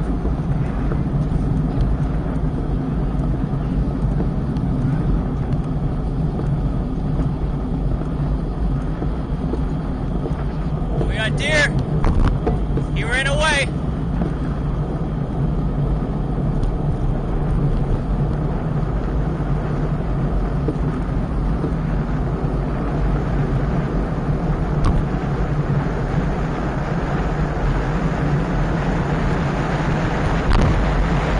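Steady wind rush and road noise over an action camera's microphone on a moving bicycle. Two short vocal calls break through about eleven and thirteen seconds in.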